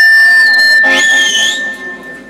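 Live qawwali music with harmonium: a high, steady whistle-like tone is held throughout, with a wavering higher note entering about a second in. The sound fades toward the end.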